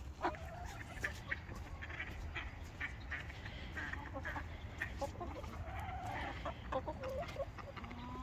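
Several backyard chickens clucking in short, scattered calls, with light clicks among them.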